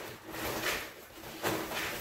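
Textured grain feed of corn, oats and pellets pouring from a plastic feed bag into a coffee can, with the bag crinkling, in two stronger rushes partway through.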